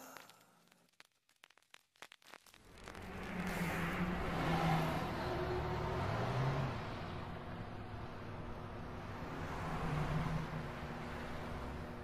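Near silence for about two and a half seconds, then a steady rushing noise with a low, wavering hum fades in and carries on.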